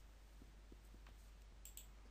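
Near silence: room tone with a steady low hum and two faint clicks near the end.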